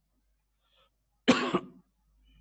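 A single sharp cough a little past halfway through, short and loud.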